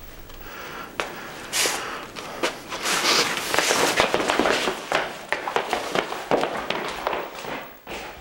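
Two men scuffling on a wooden floor: a busy run of sharp knocks, thuds and shuffling footsteps with bursts of rustling, starting about a second in and easing off near the end.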